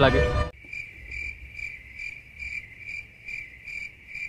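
Cricket chirping in an even, high trill that pulses about two to three times a second. It cuts in abruptly about half a second in, replacing the voice, and stops just as abruptly near the end: an added 'crickets' sound effect marking an awkward silence.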